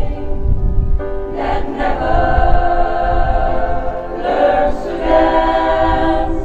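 Women's choir singing held chords together, the sound shifting to new phrases about a second and a half in and again about four seconds in.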